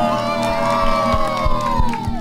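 A group of children cheering together in long, held shouts that slide down in pitch, with a few hand claps in the second half.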